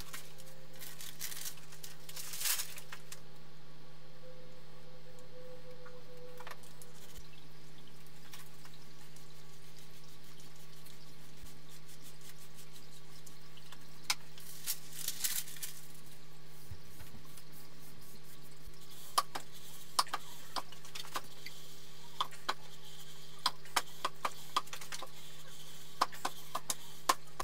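A steady low hum, with scattered light clicks, crinkles and scrapes from handling baking paper and a PVC-pipe squeegee over a wet epoxy fibreglass and carbon-fibre fin layup; the handling sounds come more often in the last several seconds.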